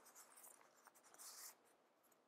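Near silence, with faint rustling of paper sticker sheets being handled, the clearest a little over a second in.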